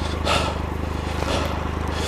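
Triumph Explorer XCa's three-cylinder engine idling steadily while the bike stands still, with heavy breaths about once a second from the worn-out rider.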